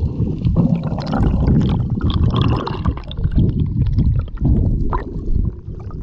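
Underwater sound picked up by a camera held under the sea while snorkelling: a loud, muffled low rumble of moving water with bubbling and small clicks.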